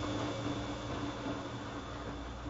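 Bosch Logixx WFT2800 washer dryer in its wash phase: the drum motor running with a steady hum and a held whine as the drum turns a wet, sudsy duvet cover, with water swishing.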